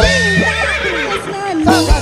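Dangdut koplo band music: a wavering, ornamented melody line that slides in pitch over a held bass note, with the drums silent until quick drum beats come back in near the end.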